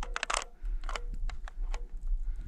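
Footsteps crunching in snow, irregular short crackles, with a low wind rumble on the microphone.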